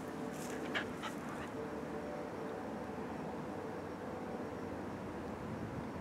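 Shetland sheepdog whimpering faintly over a steady background hiss, with a few short sharp sounds in the first second or so.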